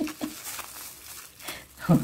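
Thin plastic piping bag rustling and crinkling as it is handled and its loose plastic peeled back, with a short burst of voice near the end.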